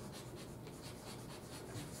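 Chalk writing on a chalkboard: a quick run of faint strokes as a word is written.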